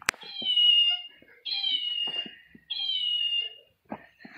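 A cat meowing three times in a row, each meow high and about a second long, falling slightly in pitch.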